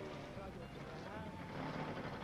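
Brief, faint voice sounds over a steady background hiss on an old film soundtrack.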